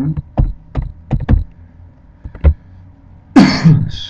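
A man coughs once, loudly, about three and a half seconds in. Before it come a few short, scattered taps on a computer keyboard as a formula is typed.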